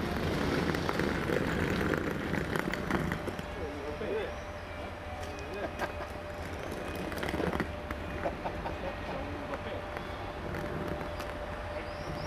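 FS Class E.464 electric locomotive approaching slowly with its train, a thin steady whine from about five seconds in, under a low rumble and indistinct voices in the first few seconds.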